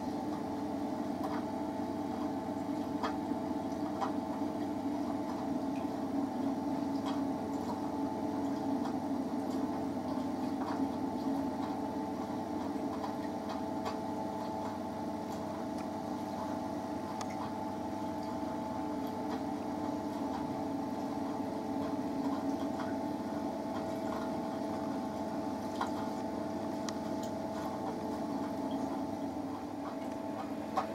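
A running saltwater reef aquarium: a steady, even hum from its pumps with water moving and trickling at the surface, and a few faint ticks.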